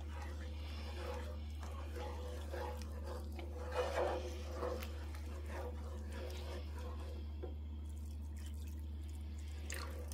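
Wooden spoon stirring a thickening butter-and-flour roux with chicken broth in a skillet: soft, faint wet sloshing and scraping, with a couple of slightly louder strokes about four seconds in, over a steady low hum.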